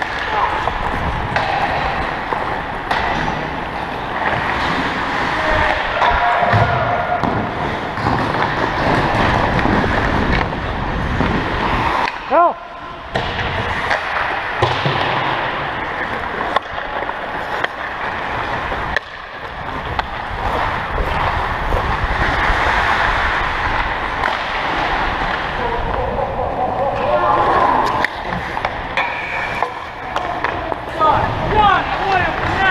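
Ice hockey play heard from among the skaters: skate blades scraping and carving on the ice, with repeated clacks and knocks from sticks, puck and boards.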